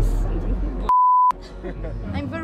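A single censor bleep: a short, steady beep of one pitch, under half a second long, about a second in, replacing a word in a fighter's interview speech.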